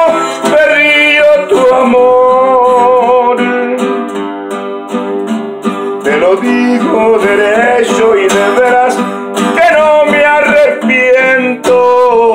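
Twelve-string acoustic guitar strummed and picked in a steady instrumental passage of a Mexican ballad, played between sung lines.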